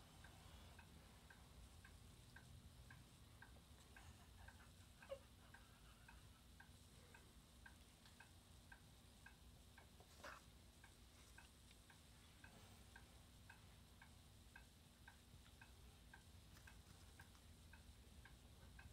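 Near silence with a faint, regular ticking about twice a second, and a couple of soft single knocks.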